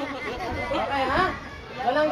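Several people talking at once, voices overlapping in casual chatter.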